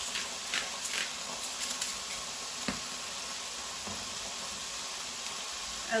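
Chickpeas and garlic sizzling in olive oil in a frying pan, a steady hiss. In the first second or so a pepper mill grinds over the pan with short scratchy clicks, and a single click comes near the middle.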